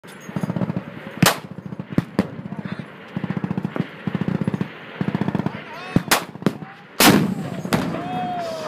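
Machine guns firing short bursts of rapid shots, with several louder single shots among them. About seven seconds in comes one much louder blast with a long rumbling tail: the howitzer firing.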